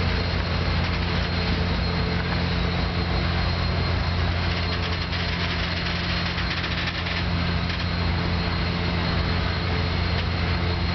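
Union Pacific passenger train cars rolling past at close range: a steady clatter and rumble of wheels on the rails, under a steady low hum from the diesel generator in the train's power car.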